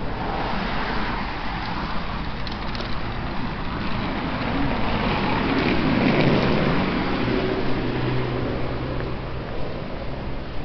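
City street traffic: a car passes close by, its sound swelling to a peak about six seconds in, followed by a steady low engine hum.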